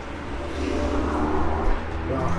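A car driving past on the street, its noise swelling about half a second in and growing louder towards the end.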